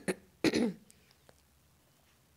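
A person clearing their throat: two short rough bursts, one at the start and one about half a second in, then quiet.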